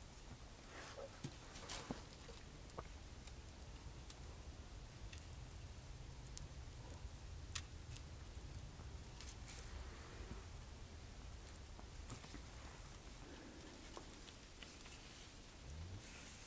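Very quiet: a faint low rumble with a few scattered small clicks and light rustles from wooden sticks being handled over leaf litter.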